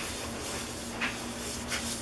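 Scrubbing pad rubbed over a glass-ceramic cooktop coated with Cerama Bryte cream cleaner: a steady swishing.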